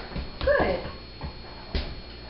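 A dog gives one short whine about half a second in, falling in pitch. A light click follows near the end.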